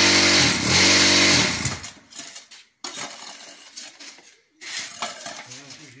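Concrete block machine's vibrator motor running with a loud, steady buzz while the mould is compacted, cutting off about a second and a half in. After that, scattered scraping and knocking of a metal scraper dragged over the filled mould.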